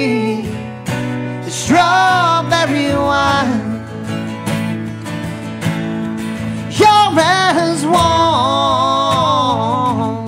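A man singing a country ballad with strummed guitar backing. Two sung phrases, the first about two seconds in and the second about seven seconds in, each ending on long held notes.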